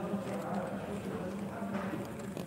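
Indistinct voices with no clear words, mixed with a few light clicks.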